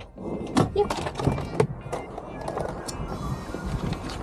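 Close rustling of sheets of paper with handling knocks and clicks, several sharp ones in the first second and a half, then a steadier rustle; background music underneath.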